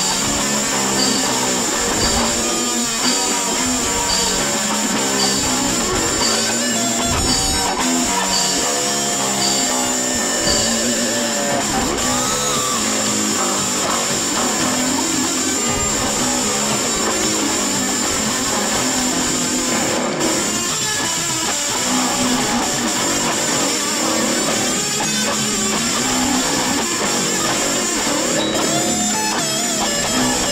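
Hard-rock band playing an instrumental passage with no vocals: electric guitar over bass guitar and drums, at a steady loudness.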